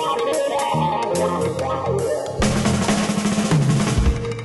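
Jazz quintet playing, with a drum-kit fill of rapid snare and rim hits over bass notes, the drumming growing denser about halfway through.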